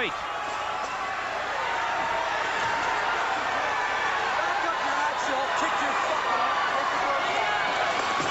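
Ice hockey arena crowd cheering and shouting through a fight on the ice: a steady, even din of many voices.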